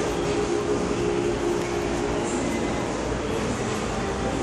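Steady machine hum with a low drone and an even rumble, heard indoors, with the rustle of the phone being moved.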